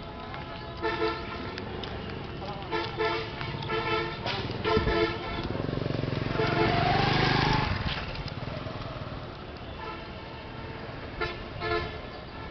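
Road traffic with repeated short vehicle-horn toots, several in quick succession in the first five seconds and two more near the end. A vehicle passes close by about six to eight seconds in, the loudest part.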